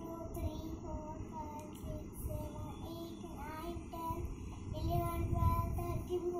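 A child singing a simple tune in short held notes that step up and down, over a steady low background hum.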